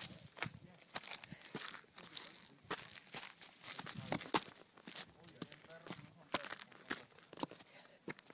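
Irregular footsteps crunching and scuffing over loose rock and gravel on a mountain trail while climbing.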